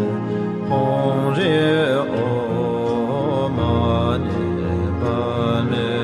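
A melodic sung mantra: one voice holds long notes that bend and waver in pitch, over a steady held drone beneath.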